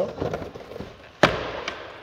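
Faint handling noise, then a single sharp clunk about a second in with a short fading tail, from hardware on the pickup's driver side.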